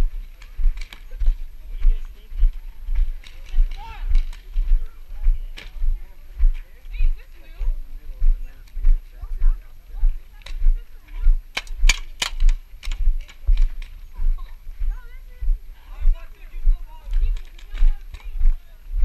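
Walking footsteps on dirt jolting a body-worn action camera, giving a steady low thud about twice a second. About twelve seconds in comes a quick run of sharp cracks, with faint voices in the background.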